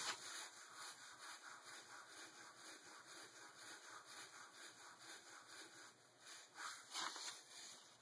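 Ballpoint pen stroking across paper as lines are sketched: faint, quick, repeated scratchy strokes, a little louder about seven seconds in.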